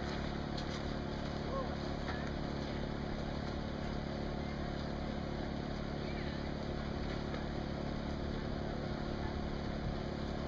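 A motor running steadily, giving a low, even hum, with faint voices in the background.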